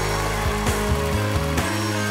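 Live band music in an instrumental break: electric guitar over held bass notes and steady drum hits, with no singing.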